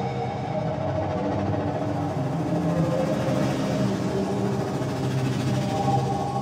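Live ambient electronic music: layered, sustained synthesizer drones whose held tones shift slowly in pitch, with no clear beat.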